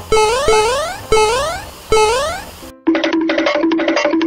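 Smartphone game sound effects: four quick rising electronic glides, each starting with a click. About three seconds in they give way to a short bright musical jingle of held notes.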